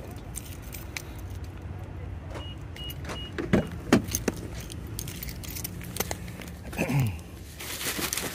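Keys jangling as a person walks out to a car, over a steady low outdoor rumble. About four short high beeps come midway, a few sharp clicks follow just after, and a burst of rustling near the end comes as he gets into the car.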